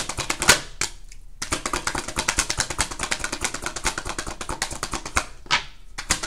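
Tarot cards being shuffled by hand: a rapid run of card-on-card clicks that pauses briefly about a second in and again near the end.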